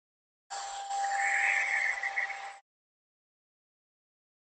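An 1875-watt hair dryer running with a steady blowing hiss and a fixed whine. It comes in about half a second in and cuts off suddenly a little after halfway.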